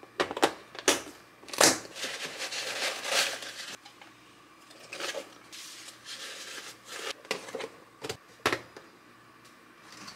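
Handling of a snap-lock plastic food container: several sharp clicks as its lid latches snap shut, a stretch of crinkling as a thin plastic sheet is handled, then a few more clicks near the end.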